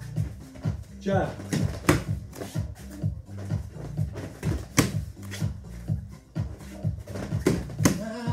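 Electronic dance music with a steady beat of about two pulses a second over a bass line, and a short spoken "ah" about a second in.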